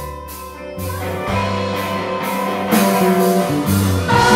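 Live band playing an instrumental passage on electric guitars, keyboards and drums, swelling louder after about a second and again near the end.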